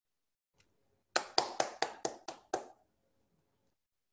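One person clapping, seven quick claps at a little over four a second, heard through a video-call microphone.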